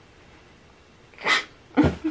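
A person's two short, sharp bursts of breath through the nose and mouth, a little over a second in, about half a second apart.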